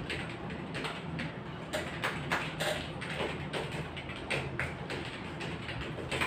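Typing on a computer keyboard: uneven keystroke clicks, a few each second, over a low steady hum.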